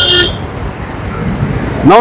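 Road traffic passing on a highway, a steady rushing noise. A brief high-pitched tone cuts off just after the start, and a man's voice comes in at the very end.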